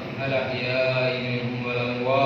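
A man's voice chanting devotional Islamic verses in long, drawn-out melodic phrases, amplified through a microphone and loudspeaker system.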